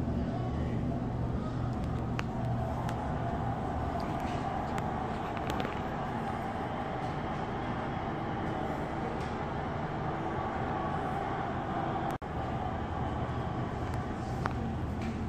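Steady low hum and background room noise, with a few faint ticks and a brief dropout about twelve seconds in.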